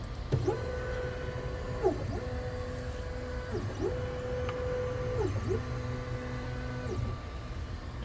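Stepper motors of a Longer Ray5 10W laser engraver whining as the head runs the framing outline around a tile. There are four moves, one per side of the rectangle; each rises in pitch as it starts, holds steady and drops as it stops.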